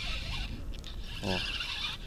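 Wind rumbling on the microphone over the whir of a spinning reel being cranked on a jig retrieve.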